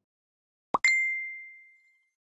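Message-notification sound effect: a quick rising pop followed at once by a single bright ding that rings out and fades over about a second.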